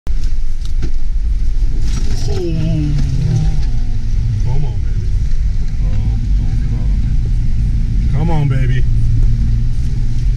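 A Jeep's engine and drivetrain rumbling steadily, heard from inside the cabin as it drives along a muddy, flooded trail. Short shouts and exclamations from the occupants break in several times over it.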